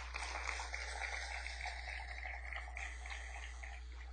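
Congregation applauding in praise, a dense patter that slowly fades away, over a steady low electrical hum.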